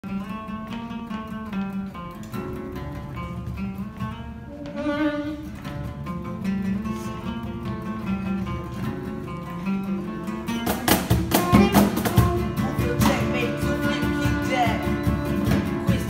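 Acoustic band music: two acoustic guitars pick a gentle intro. About ten and a half seconds in, a cajon comes in with sharp strikes and the band plays louder.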